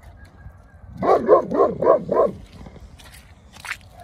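A dog barking five times in quick succession about a second in, each bark rising and falling in pitch.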